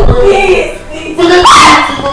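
A person crying and wailing loudly, in high cries that rise and fall in pitch, the strongest coming near the end.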